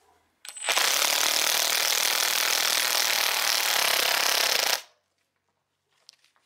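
Cordless drill running steadily at speed for about four seconds, driving a blind rivet adapter with a rivet in its nozzle; it starts half a second in and stops abruptly near the five-second mark.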